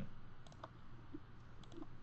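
A few faint clicks from a computer mouse and keyboard being worked, in two small clusters about half a second in and near the end.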